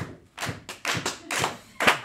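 Laughter with a handful of irregular hand claps, about six sharp claps over two seconds.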